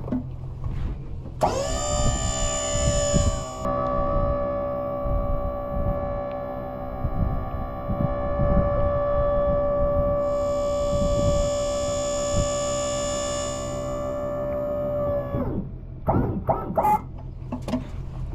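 Electric-hydraulic pump of a tilt-deck car trailer running while the deck is tilted down. It is a steady high whine that starts abruptly about a second and a half in, holds for about fourteen seconds and winds down near the end, with a few knocks underneath.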